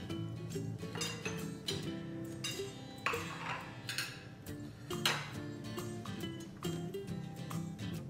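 Background music playing steadily, with a fork clinking and scraping on a ceramic dinner plate a few times, the sharpest clinks about three and five seconds in.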